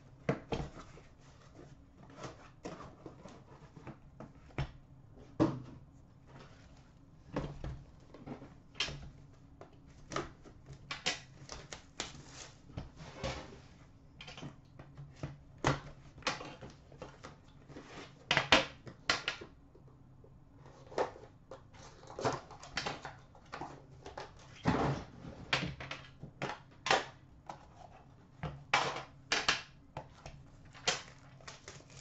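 Cardboard case and metal card tins handled and unpacked: a string of irregular clicks, taps and knocks with brief scrapes, as tins are lifted out and set down on a glass counter and a tin lid is worked open.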